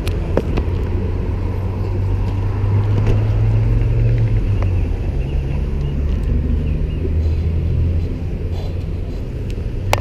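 A road vehicle's engine running at the gas station, a steady low rumble that eases off near the end.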